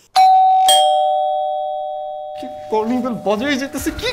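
Two-note ding-dong doorbell chime: a higher note, then a lower one about half a second later, both ringing on and fading away over a couple of seconds.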